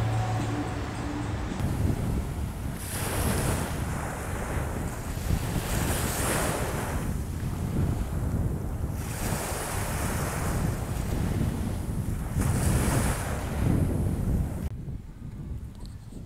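Small waves washing onto a sandy shore, the rush of surf swelling and easing about every three to four seconds, with wind buffeting the microphone. It turns quieter near the end.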